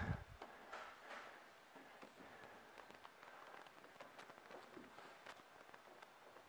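Near silence: faint room tone with a few soft taps and rustles as a Jeep Freedom Top roof panel is turned over and laid down by hand.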